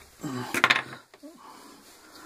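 A short scraping rustle about half a second in, as a leather strap is lifted and handled on a wooden board, with a brief mumbled word just before it and quieter handling after.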